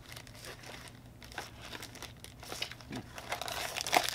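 Packaging crinkling and tearing as a small blind-box designer toy is unwrapped by hand, in irregular crackles with a sharper click near the end.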